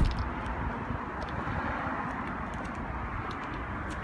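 A car door, the Mercedes S63's, thuds shut at the very start. Steady open-air background noise follows, with a few faint clicks.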